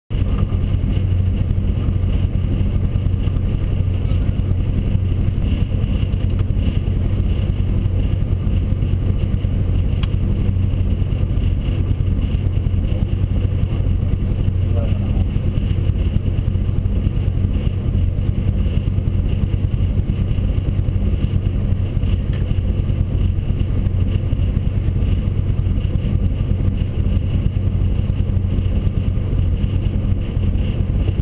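Rally car's engine idling steadily, heard from inside the stripped cabin, with no revving.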